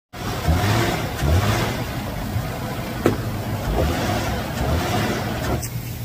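V6 engine running in the engine bay, swelling in level a few times as it is run up, with a sharp click about three seconds in. The engine rocks visibly on its mounts, the sign of a worn motor mount.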